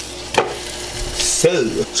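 Two chicken apple sausages sizzling on an electric contact grill, a steady hiss with a sharp click about half a second in.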